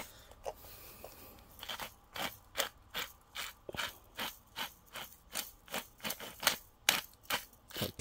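Hand-twisted pepper grinder grinding peppercorns: a regular run of short scraping grinding strokes, about three a second, starting about two seconds in.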